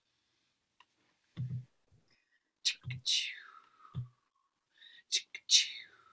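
Short breathy, whispered vocal noises, a couple of them sliding down in pitch, with a few brief low sounds in between, heard over a video call.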